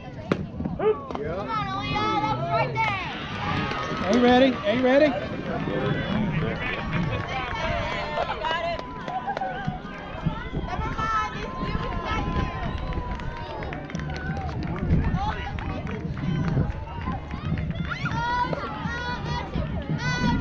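Overlapping voices of young players and spectators, chattering and calling out, with no single voice standing out; the pitch-bending high voices are busiest a couple of seconds in.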